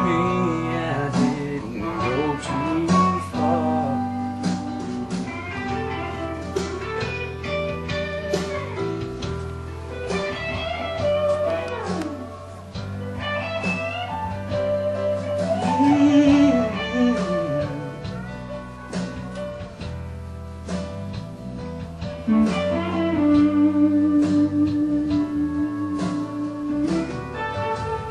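Instrumental break of a country song: a lead guitar plays sliding, bending notes over a steady band backing.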